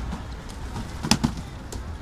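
Cardboard boxes being handled and set down, knocking and thudding, with the loudest sharp knock about a second in followed closely by a second one, over a steady low rumble.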